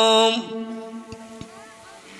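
A man's voice chanting the Arabic opening praise of a sermon (khutbah) into a microphone. A long held note cuts off about half a second in and fades away, leaving quiet with a couple of faint clicks.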